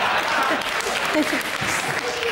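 Studio audience laughing and applauding, the applause easing off a little toward the end.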